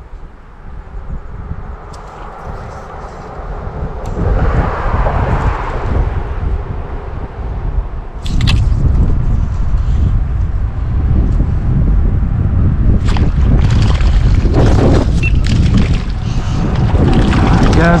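Wind buffeting a phone microphone: a heavy low rumble that grows louder about four seconds in and again about eight seconds in, with a few brief clicks.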